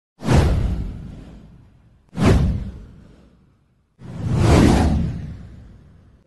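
Three whoosh sound effects about two seconds apart, each with a deep low end. The first two hit sharply and fade away slowly; the third swells in more gradually.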